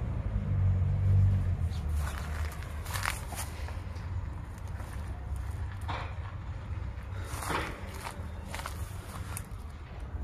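Footsteps crunching on dry ground and debris, a few irregular steps, over a low steady rumble that is loudest in the first two seconds.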